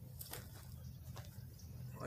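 Quiet background with a low steady hum and a few faint clicks or rustles, about a quarter second in and again about a second in.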